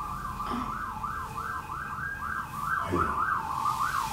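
Emergency-vehicle siren in a quick yelp, its pitch swinging up and down about three times a second.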